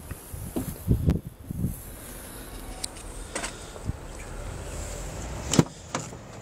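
Handheld camera handling noise and low thumps, mostly in the first two seconds, while moving round a parked car, with one sharp click near the end.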